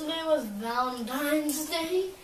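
A child's voice singing a wordless, drawn-out tune, the pitch dipping low then climbing back up.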